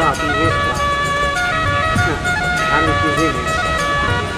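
Background music of steady held notes plays throughout. A man's voice delivers a short line at the start and another brief phrase a little before the end.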